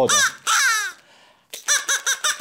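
Crow caws voicing a crow hand puppet as it 'talks': two falling caws at the start, then after a short pause a quick run of short caws.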